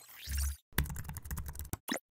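Computer keyboard typing sound effect: a rapid run of key clicks lasting about a second, then a single click just before the end. It comes after a short swoosh with a low thump.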